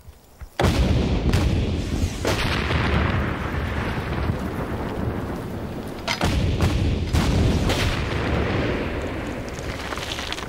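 Napoleonic field cannons firing in a battle: a sudden heavy boom about half a second in, then more shots a couple of seconds apart, their deep rumbling running on between the shots.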